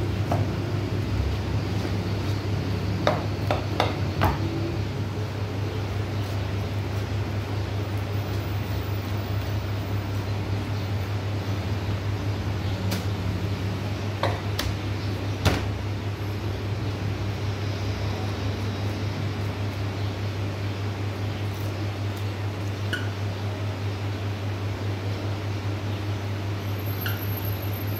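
A steady low mechanical hum runs throughout, with a few sharp clicks and taps of a butcher's knife against bone and a plastic cutting board as a sheep carcass is trimmed, a cluster about three to four seconds in and more around the middle.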